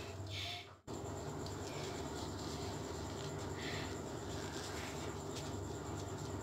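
Faint rustling and patting of a soft facial tissue against a wet face, a few soft brushes, over a steady low room hum.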